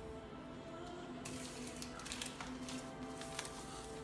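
Faint background music with long held notes, and a few light clicks of a glass jar and a paper packet being handled.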